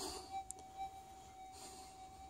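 Minelab GPZ 7000 metal detector's threshold tone: a faint, steady single-pitch hum with no target signal, plus a couple of faint ticks in the first second.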